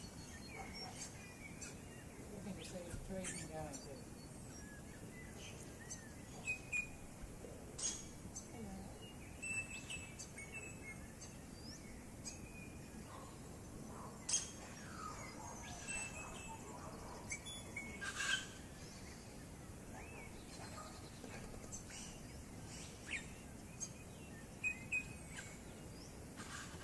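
Wild birds chirping and calling in bushland: many short, scattered calls over a faint outdoor background, a couple of them louder about halfway through.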